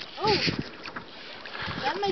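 Wind and small waves lapping on choppy open water, a steady rushing hiss. A brief voice sound comes about a quarter second in, and another just at the end.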